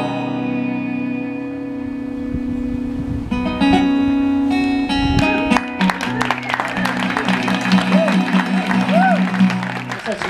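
Live acoustic guitar and cello playing the end of a song without vocals: a held chord rings for about three seconds, then new notes come in and the guitar strums chords in a steady rhythm. Near the end, a couple of short whoops come from the listeners.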